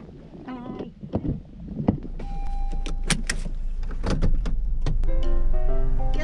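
A car being got into and started: several door and body thunks, a short beep, then a steady low hum from the engine from about two seconds in. Music comes in near the end.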